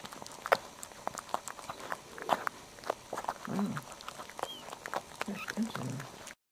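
Newborn Maltese puppies nursing: irregular small wet suckling clicks, with a few soft low grunts and a faint brief squeak.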